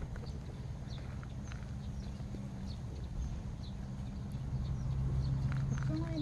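Scattered light clicks and taps, a few a second, over a steady low hum.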